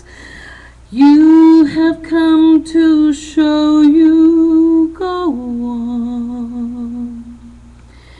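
A woman singing a cappella into a handheld microphone: after a short breath she holds several sustained notes, then steps down to one long lower note that fades out near the end.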